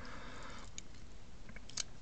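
Faint handling of a plastic Gunpla model kit: a few soft clicks from its plastic armour pieces and joints being moved in the fingers, mostly in the second half, over low room hiss.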